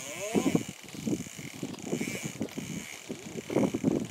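Fly reel's click-and-pawl drag buzzing in rapid clicks as a hooked salmon pulls line off the reel.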